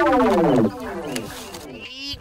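A loud pitched sound sliding steadily down in pitch for about a second, then fading into quieter background sound.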